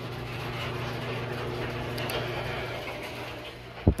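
A large drum fan running: a steady low electric hum under an even airy rush.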